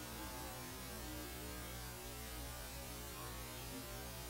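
Steady low electrical mains hum with a faint hiss beneath it.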